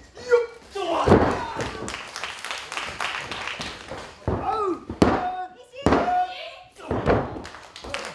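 Thuds of wrestlers' bodies hitting the ring canvas, a heavy one about a second in and sharper smacks around five and six seconds, with wrestlers' shouts and grunts between them.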